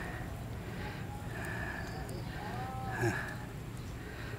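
Steady low outdoor hum with a brief faint distant call, rising then falling in pitch, about two and a half seconds in.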